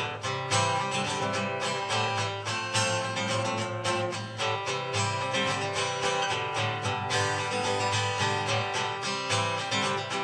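Acoustic guitar strummed in a steady rhythm, chords ringing: a solo instrumental passage of a folk song.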